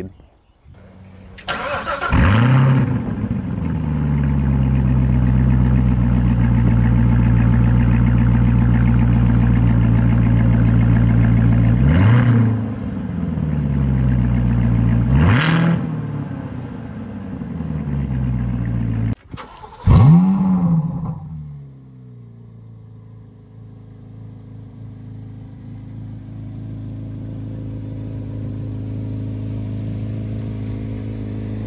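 A Corvette ZR1's supercharged LT5 V8 starts about two seconds in with a flare of revs, settles to a loud steady idle and is blipped twice. After a break, a V8 starts again with a short flare and drops to a quieter steady idle, most likely the C8 Z06's flat-plane-crank V8.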